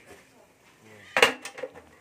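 Metal clank of a gas stove's pan support being set down onto the stove's steel top: one sharp clank about a second in, followed by a couple of lighter clicks.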